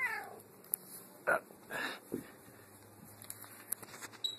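A domestic cat meowing: one meow sliding down in pitch at the very start, followed by a few short, quieter sounds about one to two seconds in.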